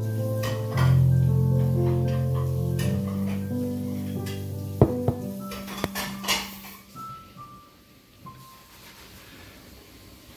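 Piano played by two people at once: sustained low chords under a slow line of notes, thinning out about halfway through to a few soft high notes, then a chord left hanging unresolved on a suspension and fading away. A few sharp clicks sound in the middle.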